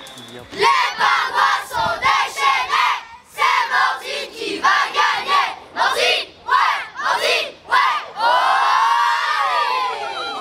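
A group of children chanting a rhythmic team cheer together in short shouted syllables, about two to three a second, then all shouting one long cheer that falls in pitch near the end.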